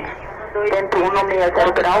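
Speech only: a Portuguese air traffic radio call starting about half a second in, over a steady low hum.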